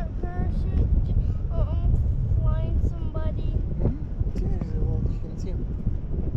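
Wind buffeting the microphone in parasail flight, a steady low rumble, with voices talking indistinctly over it.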